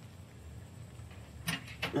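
Low background hum with two short metallic clicks near the end, from a wrench being fitted onto a nut under a truck bed.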